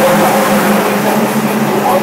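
Saleen car's engine droning steadily at highway cruising speed, heard inside the cabin over road and wind noise.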